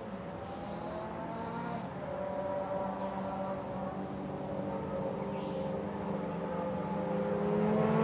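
A motor hums steadily, growing louder throughout, its pitch rising slightly.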